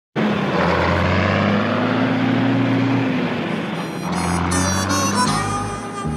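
A heavy truck engine running with road noise, with a slowly gliding drone over it. Music fades in over it in the second half, and a steady beat starts near the end.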